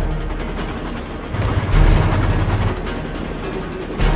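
Action-film soundtrack: dramatic orchestral score mixed with the rumble of a moving train, with a deep swell about a second and a half in.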